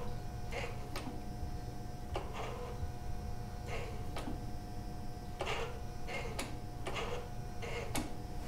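2011 Toyota Avalon's electronic throttle body, key on and engine off, its motor driving the throttle plate open and shut as the accelerator pedal is pressed and released: a short whir each time it moves, roughly in pairs, about three open-and-close cycles over a faint steady hum.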